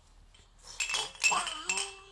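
A baby's plush rattle toy jingling with a few quick clinks as it is shaken about halfway through, followed by a short held vocal sound from an eight-month-old baby near the end.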